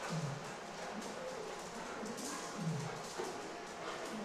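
Footsteps of a person and several dogs' paws moving across a floor, faint and irregular.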